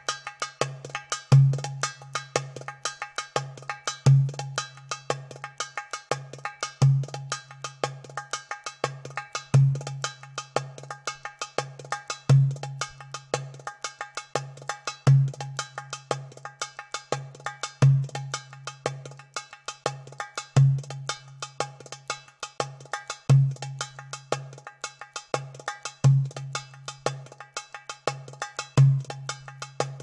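Oriental percussion rhythm: a deep drum stroke about every 2.7 s marks each bar, with quick lighter drum strokes and the bright ringing clicks of sagats (finger cymbals) filling in between, in an even, unbroken pattern.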